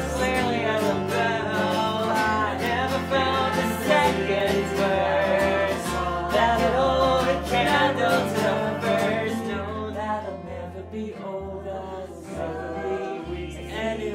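Live folk song: strummed acoustic guitar and plucked upright bass with singing, softer in the last few seconds.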